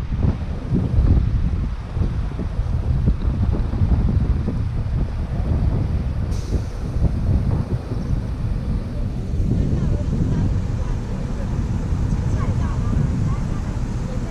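Wind buffeting the camera's microphone: a loud, gusting low rumble that rises and falls unevenly.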